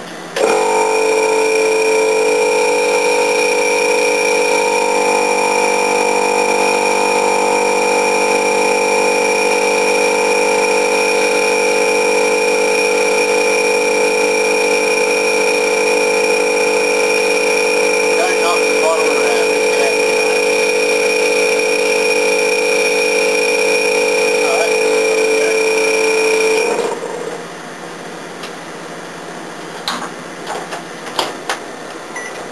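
A loud, steady electrical hum with many even overtones switches on abruptly, runs for about 26 seconds and cuts off suddenly: a mains-powered appliance running.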